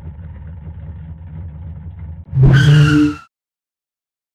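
Car sound effect: an engine running low and steady, then about two and a half seconds in a loud, short burst of engine and tyre screech at a steady pitch, ending abruptly in silence.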